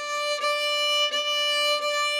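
Violin playing one sustained high note, bowed back and forth on the same pitch, with slight breaks in the tone at each bow change about every three-quarters of a second.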